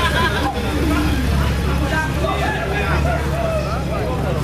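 Honda Gold Wing motorcycle's flat-six engine running at low revs, a steady low hum as the bike moves off slowly, with people chatting over it.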